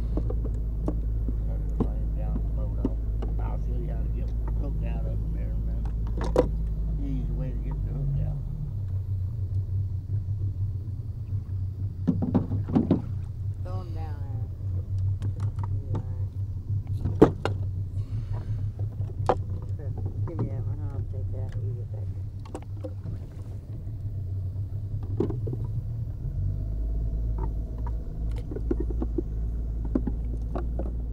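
Boat motor running steadily at low speed, its pitch shifting about nine seconds in and again near the end. Scattered knocks and clatter of PVC jugs and gear being handled in the aluminium boat.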